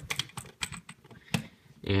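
Hard plastic LEGO pieces clicking and knocking as fingers fit a part into place on the model: a run of light, irregular clicks with one sharper click a little past halfway.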